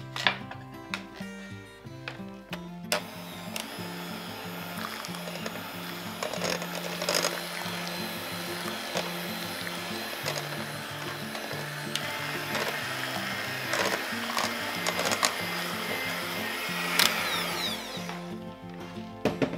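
Electric hand mixer beating cake batter in a glass bowl. It starts about three seconds in, runs steadily and stops near the end.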